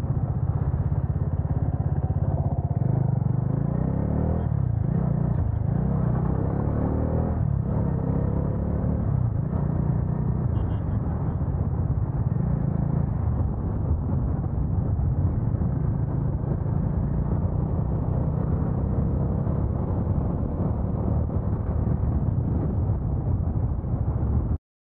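Sport motorcycle's engine running steadily while riding along a road, heard from the rider's seat as a continuous low rumble with road noise.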